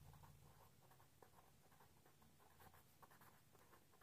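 Faint scratching of a marker pen writing on paper, a quick run of short strokes.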